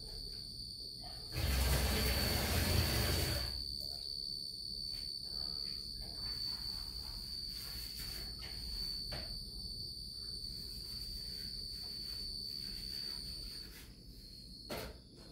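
Crickets trilling steadily in one high, unbroken tone. A loud rustling noise lasting about two seconds comes about a second in.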